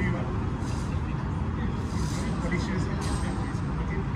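Steady low rumble of background noise with faint, indistinct voices.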